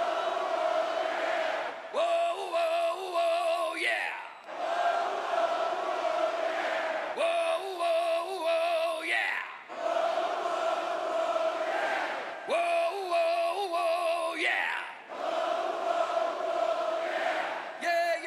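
Call-and-response between a male rock singer and a concert crowd: wavering sung 'whoa' phrases alternate with long held notes sung back by the audience, about four rounds.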